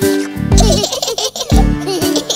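A baby giggling over an upbeat children's song with a steady beat.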